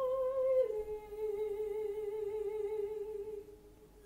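Classical soprano singing a sustained note with vibrato, then stepping down to a lower note about half a second in. She holds the lower note until it fades away near the end.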